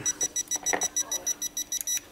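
Rapid train of high electronic beeps, about eight a second, from the True-D V3.5 diversity receiver module on Fat Shark goggles during its calibration. The beeping cuts off suddenly at the end.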